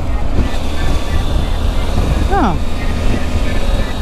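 Heavy wind rush on the microphone over the steady drone of a Triumph Tiger 850 Sport's three-cylinder engine, cruising at about 90 km/h. A brief voice is heard a little past halfway.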